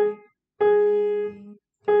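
Piano: a single black-key note struck over and over with the right hand's third finger, in a beginner firm-fingertip exercise. One short stroke, then a note held about a second, then another held note starting near the end.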